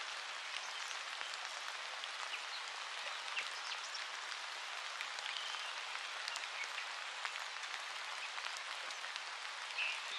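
Steady dry scratching with many small crackles: an oil stick rubbed over rough watercolour paper.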